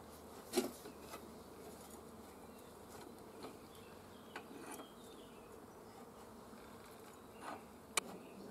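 A few isolated metal clicks and knocks from a socket wrench and the spindle nut of an angle-grinder grass cutter being handled, the loudest about half a second in, over a faint steady buzz.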